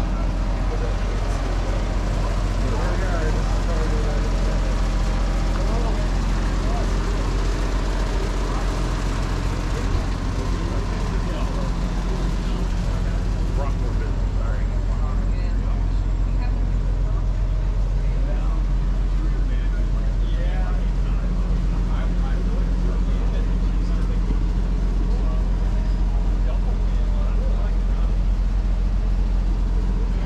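Background chatter of people mingled with a steady low hum, with no close speech.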